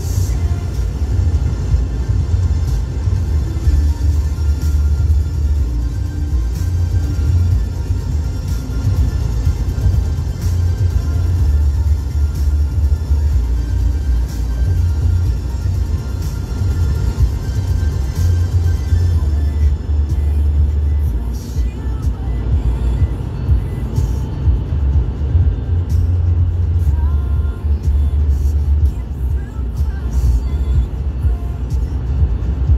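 Steady low rumble of a moving car heard inside its cabin, with music playing under it.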